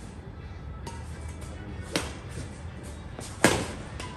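Badminton rackets hitting a shuttlecock in a doubles rally: three sharp smacks spaced roughly a second and a half apart, the first faint and the last the loudest.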